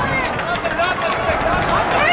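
Several people shouting and calling out at a distance across a football pitch, with wind rumbling on the microphone underneath.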